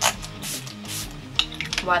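Pump spray bottle of facial primer water misting onto the face, two short hissy spritzes: one at the start and one about a second in. Low background music runs underneath.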